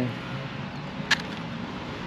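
Steady outdoor background noise with one short sharp click about a second in.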